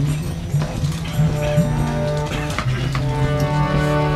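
Harmonium playing sustained reed chords, the held notes changing a few times.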